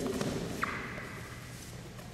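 Wrestlers moving on a wrestling mat just after a double-leg takedown: low thuds and shuffling as bodies and shoes shift on the mat, with a brief sharp sound about half a second in.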